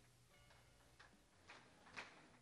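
Near silence, with a few faint, sharp clicks about half a second apart in the second half.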